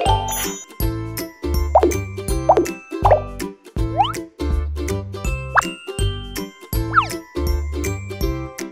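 Bouncy children's background music with a steady bass beat and plucked melody, overlaid with several short cartoon 'plop' sound effects whose pitch slides quickly up or down.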